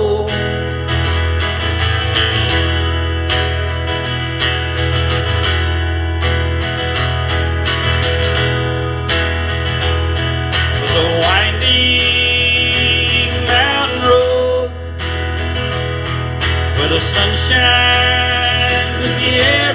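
Acoustic guitar strummed through an instrumental break of a folk-country song, over a sustained low bass with a melody line that bends in pitch.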